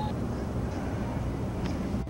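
Outdoor football-field ambience: a steady low rumble with faint voices mixed in, and a light click near the end.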